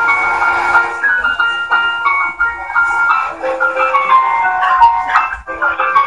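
The Baku metro's station melody: a short tune of clear, chime-like single notes stepping up and down.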